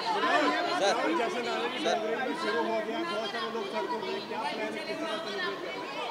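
Several people talking over one another: a steady babble of overlapping voices, reporters putting questions at once.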